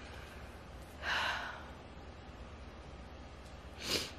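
A woman's breathing: one long audible breath about a second in, and a short sharp breath just before the end, both faint over a low room hum.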